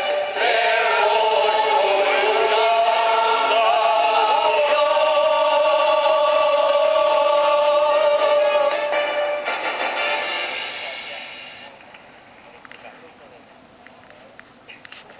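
A group of voices singing together with accordion, ending on a long held note that breaks off about nine and a half seconds in and dies away over the next two seconds. Heard through a television's speaker.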